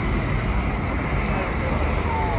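Crowd of people talking in a dense street babble over a steady low rumble of passing cars.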